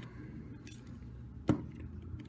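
Hard plastic parts of a Transformers combiner figure being pushed together: one sharp click about a second and a half in, with a fainter tick before it and quiet handling in between.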